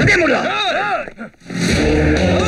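A man's loud shouts, the pitch rising and falling in a few quick arcs, then a music track starts near the end.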